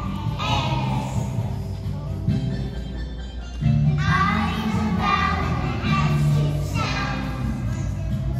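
Young children singing a vowel-sounds song together over accompanying music with a bass line that moves between notes. There is a brief lull about two and a half seconds in, then the singing and music come back louder.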